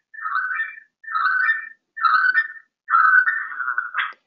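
A voice relayed over the webinar audio link, thin and tinny and garbled by audio feedback, in four short bursts.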